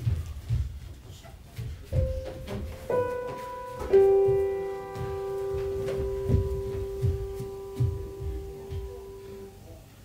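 Three single piano notes struck about a second apart, about two, three and four seconds in, the last ringing on and slowly fading over several seconds. Soft low thuds of dancers' steps and landings on a stage floor come and go throughout.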